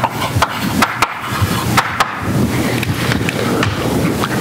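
Chalk writing on a blackboard: quick irregular taps and scrapes of the chalk stick against the slate, several a second, mostly in the first half.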